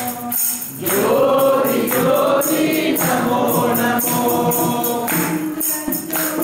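A group of voices singing a Hindu devotional bhajan together, accompanied by jingling hand percussion keeping a steady beat.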